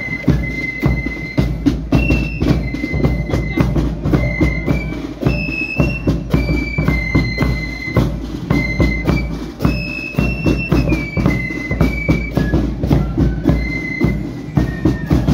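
Marching flute band playing a tune: massed flutes carry a high, stepping melody over a steady beat of bass drum, side drum and cymbals.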